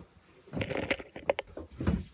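Plastic markers being handled: a quick run of small clicks and rattles from about half a second in, ending with a louder knock.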